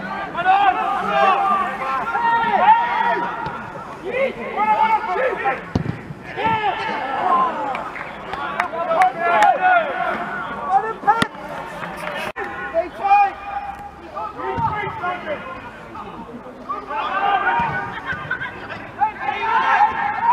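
Several voices calling and shouting across a football pitch, overlapping through the whole stretch, with a few sharp knocks near the middle.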